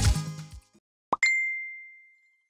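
The tail of a short music jingle fading out, then about a second in a quick rising pop followed by a single bright notification ding that rings out and slowly decays.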